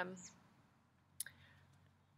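A quiet pause in speech: the end of a spoken "um", then one short, faint click about a second in.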